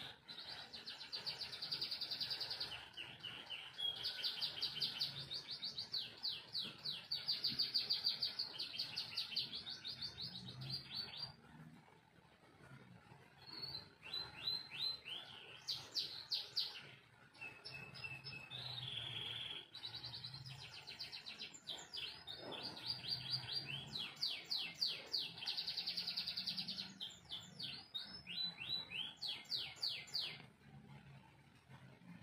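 Caged domestic canary singing long, rapid trilled song phrases, with a pause of about two seconds near the middle and shorter breaks after it.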